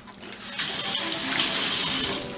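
Kitchen tap running into a stainless steel sink. The water comes on about half a second in and grows louder toward the end.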